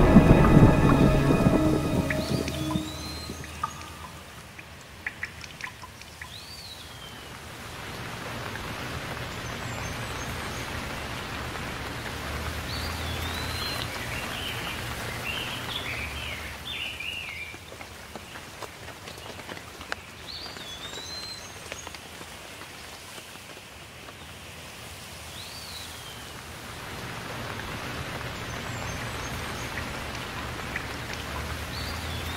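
Steady rain ambience that swells louder twice, with a bird giving short chirps every few seconds.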